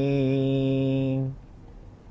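A man chanting a devotional verse, drawing out the final note in one long, low, held tone that stops about a second in.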